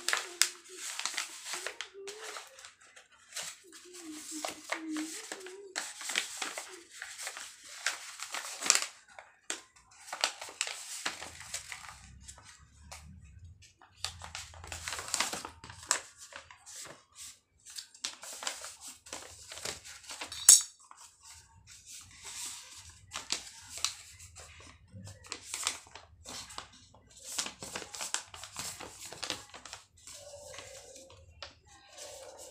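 A sheet of A4 paper rustling and crinkling in irregular bursts as it is folded and creased by hand into a paper bag, with one sharp click about twenty seconds in.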